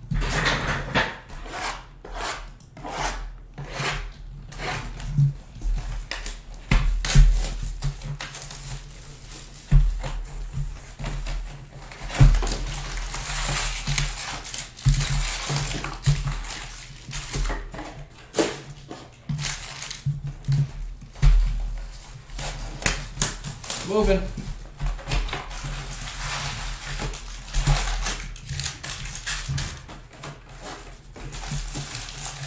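Cardboard hobby boxes being opened and foil-wrapped jumbo packs of baseball cards being handled and stacked: continual irregular crinkling, rustling and tearing of foil and cardboard.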